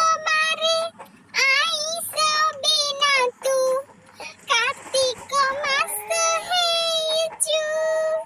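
A very high-pitched, chipmunk-like voice singing in short wavering phrases, with a few long held notes near the end.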